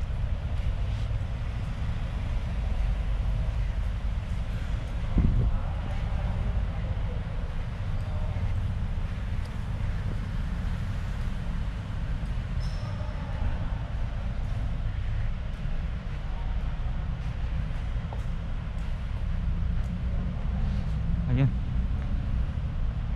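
Steady low rumble of an enclosed multi-storey car park, heard through a camera carried on foot, with a single knock about five seconds in.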